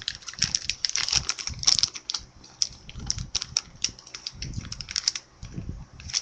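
Plastic candy bag crinkling and crackling in quick, irregular bursts as it is handled and turned over.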